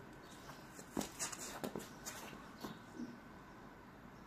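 A two-turn hammer throw's footwork heard as a quick run of sharp scuffs and taps from shoes pivoting on a concrete throwing circle. They are bunched between about one and three seconds in, over a faint steady outdoor background.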